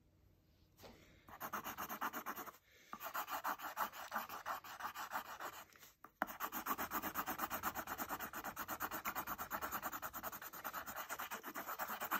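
Pencil lead scratching on paper in rapid back-and-forth strokes, several a second, as an area is shaded solid. It starts about a second in, with two brief pauses.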